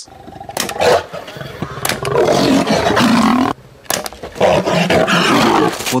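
A caged lion roaring at close range: two long, loud roars, the first about two seconds in and the second about four and a half seconds in, after shorter sounds near the start.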